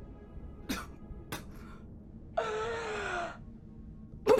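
A woman coughing and choking for breath: two short harsh coughs, then a longer strained, rasping gasp about two and a half seconds in whose pitch falls. A fit that an onlooker takes for an asthma attack.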